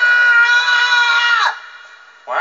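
A long, high-pitched scream from one voice, held on a steady pitch and breaking off suddenly about a second and a half in.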